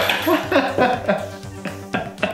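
A man laughing over background music with a steady pulsing beat.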